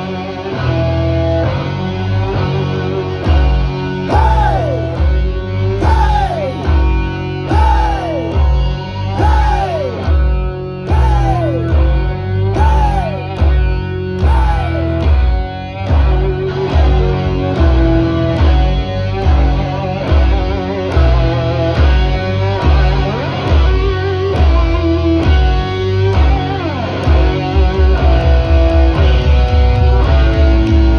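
Live hard rock band playing loud, with electric guitars, bass and drums. A swooping bent note repeats about every two seconds through the first half, and the drums break into fast, even hits near the end.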